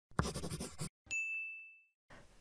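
Logo sound effect: a short burst of rough, fluttering noise, then about a second in a single bright chime ding that rings and fades away.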